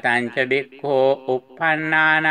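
A man's voice chanting Pali Buddhist scripture in a recitative style: a run of short, quickly changing syllables, then a long held note on one pitch near the end.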